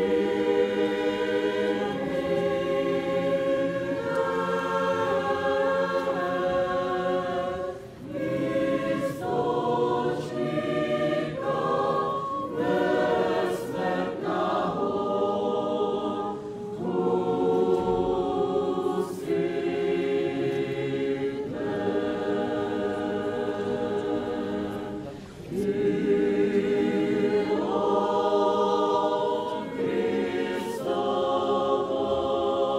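Church choir singing unaccompanied Orthodox liturgical chant in several voices, in long held phrases broken by short breaths about 8, 16 and 25 seconds in. It is sung while communion is given from the chalice.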